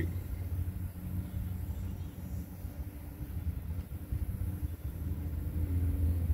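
Steady low hum inside a van's cabin, with a few faint even tones over it and no other events.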